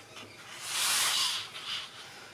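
A sheet of 12x12 scrapbook paper sliding against the other sheets in a stack, making a soft, high hiss that swells for about a second, followed by a shorter brush near the end.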